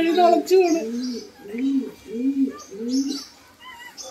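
A pigeon cooing: a run of low, rounded notes about every half second, after a brief stretch of a woman's voice at the start. A few faint higher bird chirps come near the end.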